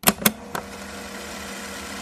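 Two quick clicks, then a steady hum with hiss.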